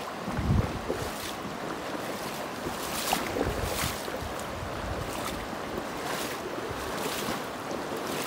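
Shallow river running over a rocky riffle, a steady rushing of water, with wind buffeting the microphone in low rumbling gusts, the strongest about half a second in.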